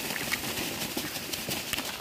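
A thin plastic rubbish bag rustling and crinkling as kitchen scraps are tipped out of it onto the ground, with a scatter of light clicks and taps.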